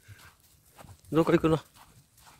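A man's short vocal sound, about a second in, in three quick low-pitched pulses.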